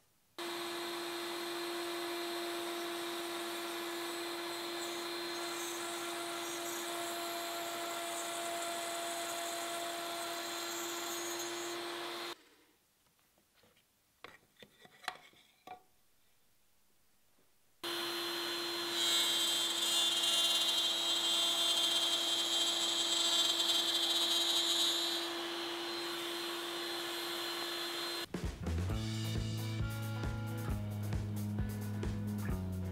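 Router table running an eighth-inch spiral bit that cuts spline grooves into the end grain of cherry pieces. It runs steadily for about twelve seconds and stops. After a pause with a few light clicks of the wood being handled, it runs again for about ten seconds, with louder cutting in the middle of that run. Music starts just before the end.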